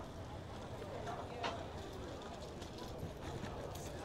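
Footsteps on the dock, faint knocks at a walking pace, with people talking in the background.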